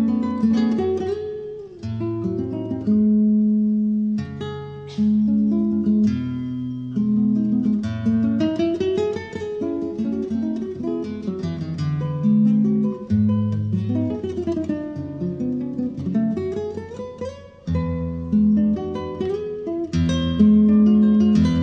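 Solo nylon-string acoustic guitar played fingerstyle: plucked melody notes over a moving bass line, with quick rising runs of notes about eight seconds in and again about sixteen seconds in.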